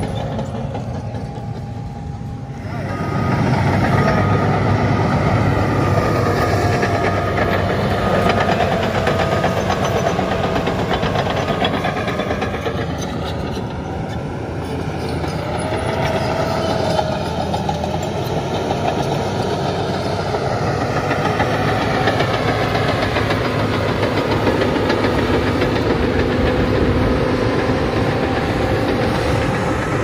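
Crawler bulldozer working dirt: its diesel engine runs steadily under load while the steel tracks clank and rattle. It gets louder about three seconds in, and a whining tone rises and falls now and then.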